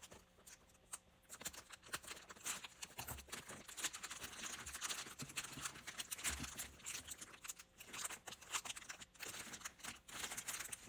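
Clear plastic wrapping crinkling and rustling as it is cut and pulled off a handbag's handles, starting about a second in.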